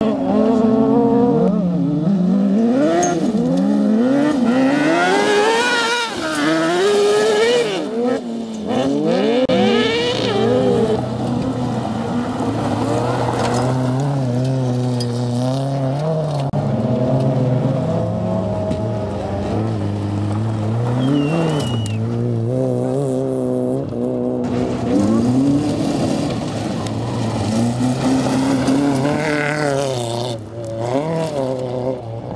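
Competition cars' engines revving hard and dropping back again and again as they accelerate and brake between slalom gates. The pitch climbs and falls with each gate, with the widest swings in the first third.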